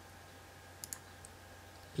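Computer mouse button clicks: a quick pair just under a second in and a fainter single click shortly after.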